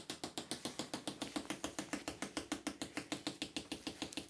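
A zip on Gore-Tex waterproof trousers being drawn slowly, its teeth giving a steady run of quick, even clicks, about ten a second.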